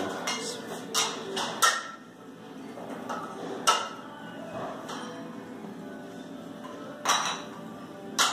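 Kitchenware being put away: a few sharp clinks and knocks, the loudest a little under four seconds in and another about seven seconds in.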